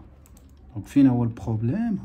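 A man's voice speaking, starting about a second in, after a short quiet stretch with a few faint light clicks.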